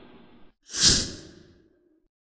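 A short breathy whoosh swells up about a second in and fades within half a second, after the dying tail of a hit just before it.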